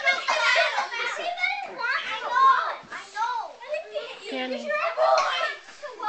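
Several young children shouting and squealing over one another as they play, a constant overlapping clamour of high voices with no clear words.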